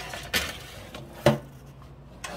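Metal baking tray being slid onto a toaster oven's wire rack: a short scrape, then a sharp metallic clank just over a second in.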